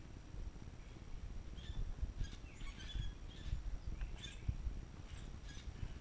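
Short, scattered bird chirps, faint, over a low rumble of wind on the microphone.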